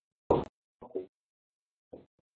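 A person's voice speaking two or three brief, isolated syllables, with dead silence between them.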